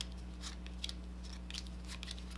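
Playing cards being handled and dealt off a packet onto a cloth close-up mat: a few light snaps and clicks at uneven intervals, over a steady low electrical hum.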